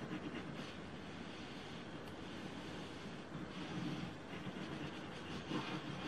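Quiet room tone with faint handling sounds: the plastic tip of a white-glue bottle drawn across cardstock while a hand steadies the card, a little louder around the middle.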